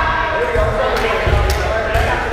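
Rubber dodgeballs smacking in an echoing gymnasium, with sharp strikes about a second in and again half a second later, over players' voices.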